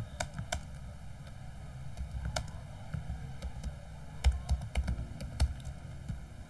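Typing on a computer keyboard: irregular key clicks, with a few louder strokes between about four and five and a half seconds in, over a steady low hum.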